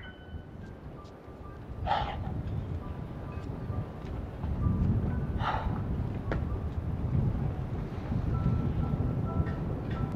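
Outdoor waterside ambience: a steady low rumble of wind on the microphone, louder from about halfway, under soft background piano music. Two short sharper sounds come about 2 s and 5.5 s in.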